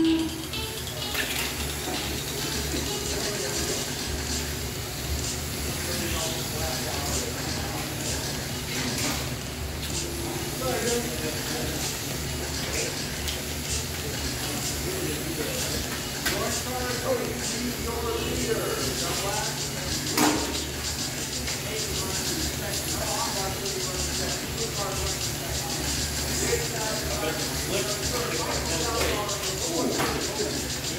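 Indoor race hall ambience: background chatter over a steady hiss and hum while small 1RC electric RC cars run laps.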